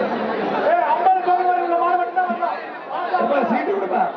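Crowd of spectators shouting and chattering at a bull-taming event. About a second in, one voice stands out holding a long call on a steady pitch.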